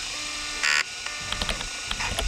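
Old-PC sound effects: a short electronic buzz a little under a second in, then a quick run of small clicks as keys are typed at the DOS prompt.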